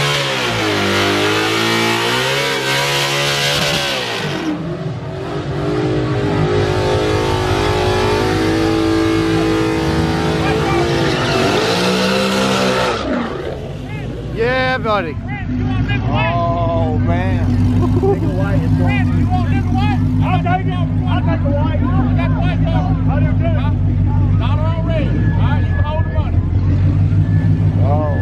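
Ford Mustang GT 5.0 V8 engines revving hard with tyre noise for about the first 13 seconds, the pitch climbing and dropping several times. Then a Mustang V8 idles steadily close by.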